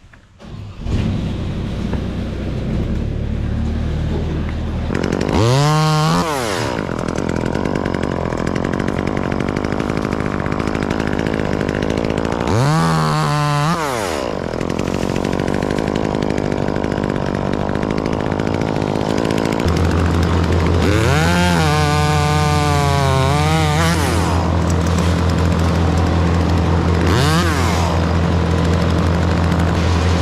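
Two-stroke top-handle chainsaw started about a second in, then idling and revved up to full speed and back down four times, the longest burst in the second half. From about two-thirds of the way through a louder steady engine drone runs under it.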